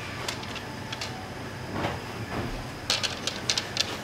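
Handling noise of a ruler being laid down and slid over carpet: soft rustling, with scattered small clicks and a quick run of light clicks and taps about three seconds in.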